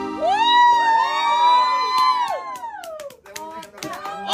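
The button accordion's last chord held under long rising-and-falling whoops of cheering from people in the room, with a few claps near the end, as the song finishes.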